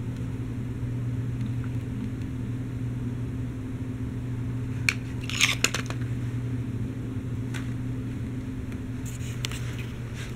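Battery-powered electric motor of a K'nex toy truck running steadily, turning its plastic gear train with a low hum. A few sharp plastic clicks come about five seconds in and again near the end.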